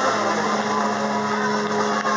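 Loud live rock music from a band, with a low note held steady underneath.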